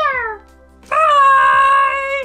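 Cat-like meowing: a falling call fading out at the start, then one long, steady call about a second in.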